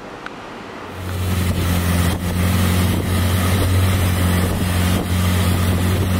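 Long-tail boat engine running steadily, a low drone that begins about a second in.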